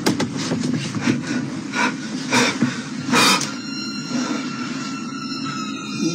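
A low steady hum with several sharp knocks and clicks and a short burst of hiss about three seconds in; thin steady high tones join from about halfway.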